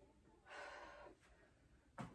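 A woman's single soft breath out, about half a second long and starting about half a second in, from the effort of a lunge lift. Otherwise near silence.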